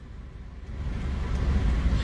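Low rumble of a car's engine and road noise heard from inside the cabin, growing steadily louder from about half a second in.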